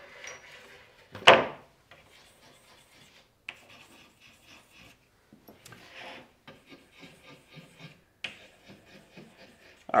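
A wooden door frame is set down on a workbench with a single sharp knock about a second in. Faint, scattered strokes of chalk scratching on the wooden rail follow.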